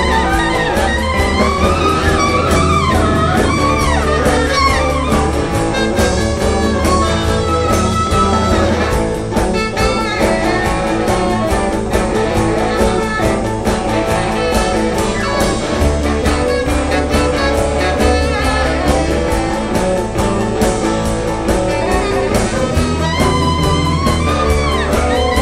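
Live rock-and-roll band playing an instrumental passage: saxophone over electric guitars, bass and drums, with a steady beat.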